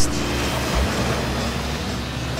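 A motorboat under way on the river: a steady rush of water and wind over a low engine drone.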